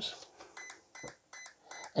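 An RC car's brushless electronic speed control (ESC) beeping out a setting in programming mode: four short, high-pitched beeps, about two a second. Four beeps mean the low-voltage cutoff is currently set to option 4, 3 volts per cell.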